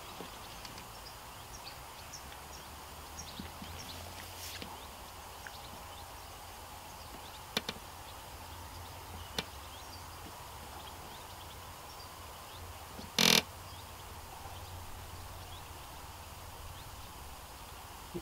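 Quiet outdoor background with a faint steady high hum. There are a few small clicks from tackle being handled, and one short, loud burst of noise about thirteen seconds in.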